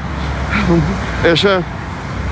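Steady low rumble of road traffic on a busy city street, with a man's voice briefly speaking over it in the middle.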